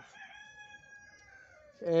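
A faint, drawn-out call about a second and a half long, holding one pitch and sagging slightly at its end; a man's voice starts again near the end.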